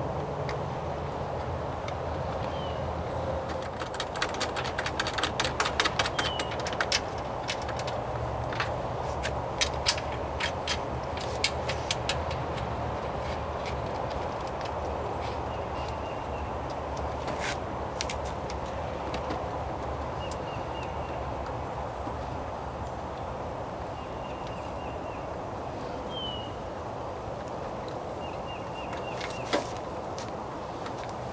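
Quick plastic clicks and taps as a new headlight assembly's retaining clip is worked into place, a fast run of them a few seconds in and a few more after, over a steady low hum, with short bird chirps now and then.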